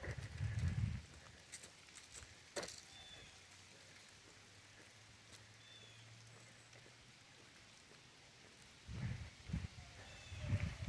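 Quiet outdoor ambience: a few faint short chirps and scattered light clicks over a faint steady hum, with low thuds in the first second and again near the end.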